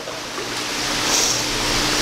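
Water splashing and churning as a person swims through a pool, growing louder over the two seconds.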